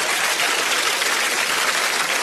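Audience applauding, a steady even clatter of many hands clapping.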